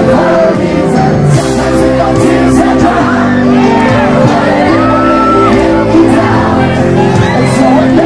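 Live reggae band playing with singing, and audience voices shouting and whooping over the music.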